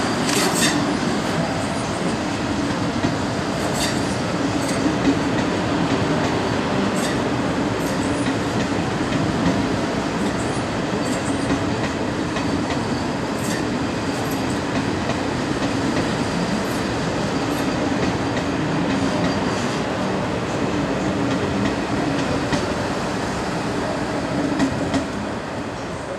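ČD class 680 Pendolino electric train running past close by, with a steady rumble and hum and many irregular clicks of wheels over rail joints.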